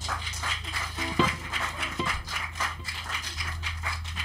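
Small audience applauding in a small room: scattered, irregular hand claps, with a brief shout about a second in.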